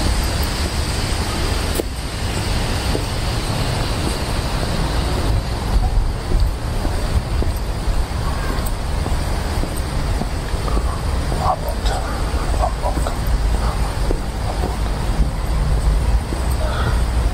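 Steady low outdoor rumble of distant road traffic and wind on the microphone. A few faint voices come through about twelve seconds in.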